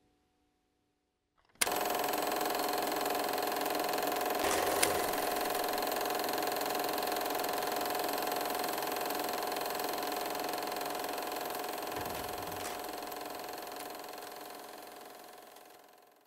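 Logo-sting sound effect: a steady mechanical whirring with a held hum, starting abruptly about a second and a half in and fading out over the last few seconds, with a sharp click about five seconds in.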